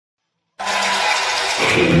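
Karaoke backing track starting suddenly about half a second in after silence with a sustained chord, then bass and guitar notes coming in about a second later.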